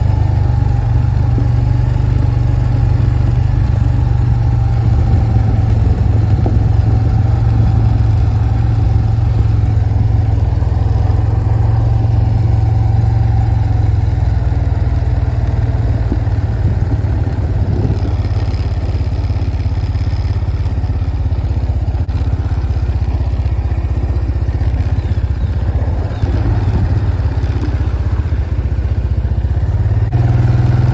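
Honda ATV engine running steadily at an even speed while the quad is ridden.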